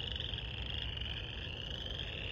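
A dense chorus of many frogs calling at once, a steady high-pitched din that is just going wild: the spring chorus of frogs.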